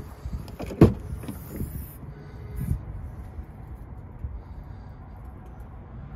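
Rear swing gate of a Ford Bronco being unlatched and swung open: a sharp clunk of the latch about a second in, a few lighter knocks over the next two seconds, then only a low steady background.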